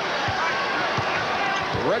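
A basketball being dribbled on a hardwood court, three low bounces about evenly spaced, over steady arena crowd noise.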